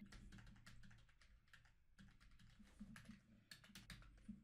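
Faint computer keyboard typing: a quick run of separate keystrokes, with a short lull between about one and two seconds in.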